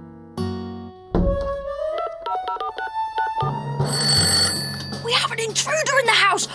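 Background cartoon music with a run of short plucked notes, then a telephone ringing for about a second and a half as a call is placed, followed by a voice near the end.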